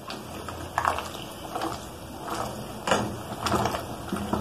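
Spatula stirring pasta in sauce and scraping the bottom of an aluminium pot, in irregular strokes about every half second.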